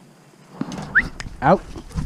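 A man's voice firmly ordering a dog "Out". Just before the word there is a short, high, rising chirp, and under it a low rumble.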